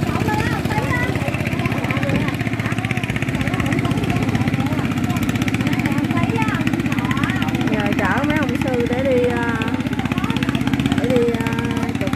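A small engine running steadily at an even speed throughout, with indistinct voices talking over it.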